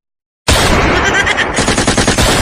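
Cartoon machine-gun sound effect: a rapid, continuous run of shots that starts about half a second in, after a brief silence.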